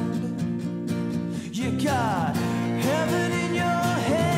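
Acoustic band playing an instrumental passage: strummed acoustic guitars over steady held chords, with a melody line that slides down in pitch about two seconds in and then climbs again.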